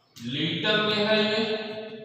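A man's voice holding one long, drawn-out syllable at a nearly steady pitch for most of two seconds.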